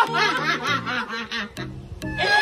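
A person laughing in a quick run of short ha-ha bursts that fades out after about a second and a half, over background music with a steady bass line.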